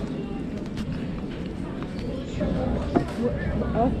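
Low talk between people at a meal table, with a couple of light clicks of tableware.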